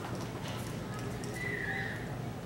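Footsteps knocking across a wooden stage in a large, echoing hall, over a low murmur of voices, with a brief high squeak in the second half.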